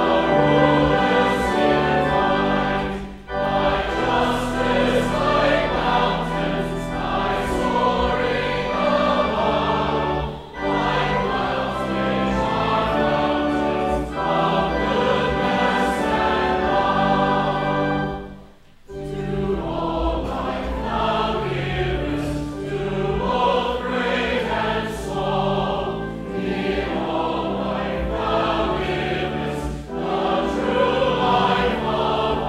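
A processional hymn sung by a choir and congregation to a pipe organ, with a steady low bass under the voices and brief breaks between phrases, the longest about two-thirds of the way through.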